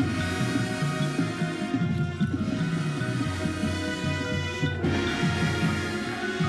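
High school marching band playing its field show, brass and drums together over a moving bass line.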